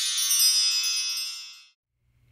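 Bright chime sound effect: a shimmering cluster of high ringing tones that fades away and stops shortly before the end.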